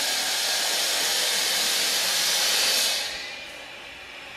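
A steady hiss, like rushing air, that fades down to a quieter hiss about three seconds in.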